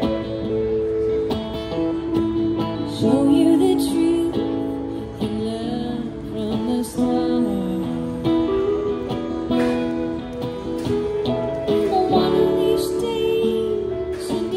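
Live music from an acoustic guitar and an electric guitar, with a woman singing a melody over them.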